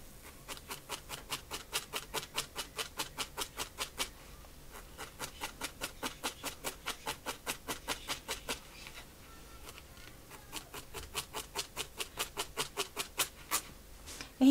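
Felting needle stabbing repeatedly through a small ball of wool roving into a foam pad, a quick crisp stab about four or five times a second. The stabbing pauses briefly about four seconds in and again around nine seconds.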